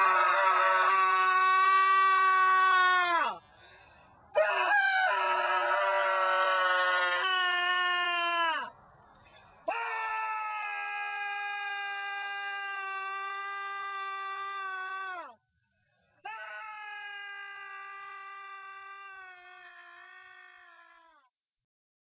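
Four long, held pitched tones, each sagging down in pitch as it ends, with short gaps between them and each quieter than the one before.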